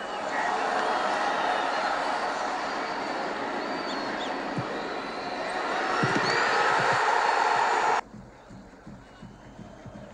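Football stadium crowd noise, a steady roar of many voices that swells a little about six seconds in as the ball goes into the net. It cuts off abruptly about eight seconds in, leaving only a faint murmur.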